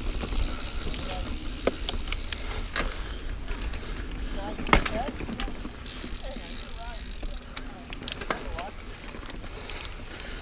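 Niner Jet 9 RDO full-suspension mountain bike riding over a dirt singletrack: steady tyre-on-dirt noise with low rumble and scattered rattles and clicks from the bike, the loudest a sharp knock a little under five seconds in.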